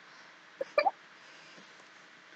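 Two quick, short vocal sounds from a person, a little over half a second in, like a hiccup; otherwise only faint room tone.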